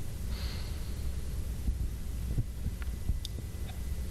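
Low, steady rumble of room noise. About half a second in there is a short breath through the nose as a man brings his hands to his face, and a few faint ticks come near the end.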